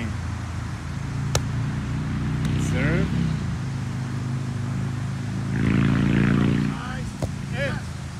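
A steady low engine hum from a motor vehicle runs throughout, grows loudest a little after five seconds in, then fades. About a second and a half in there is one sharp smack of a volleyball being served by hand. Players call out briefly.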